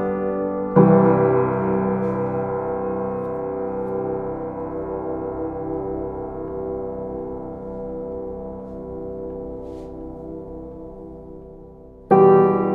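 Background music: a piano chord struck about a second in, left ringing and slowly fading away.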